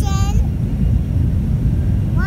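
Steady low rumble of airplane cabin noise, heard from inside the cabin. A toddler's short high-pitched vocal sound comes right at the start.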